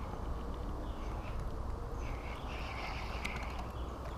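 Outdoor ambience with a steady low rumble, and a bird calling a few times in the middle.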